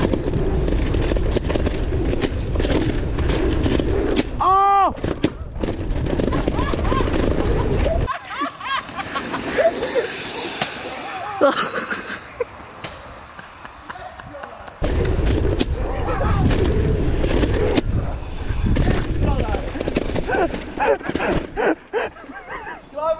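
Wind buffeting the camera microphone and rumble from a mountain bike riding fast over a dirt trail, loud and unsteady. It drops to a quieter stretch in the middle and comes back near the end.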